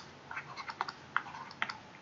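Stylus pen tapping and clicking on a tablet screen while drawing small marks: a run of light, irregular clicks, several a second.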